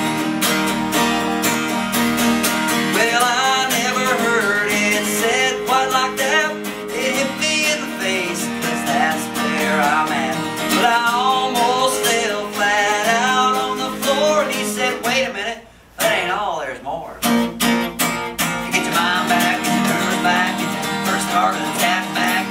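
Acoustic guitar strummed in a steady rhythm while a man sings over it. The playing nearly stops for a moment about three-quarters of the way through, then picks up again.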